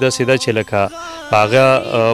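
A man speaking in Pashto in short phrases with brief pauses.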